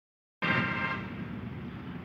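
A vehicle horn sounding once: a single pitched note that starts sharply and fades out over about a second and a half.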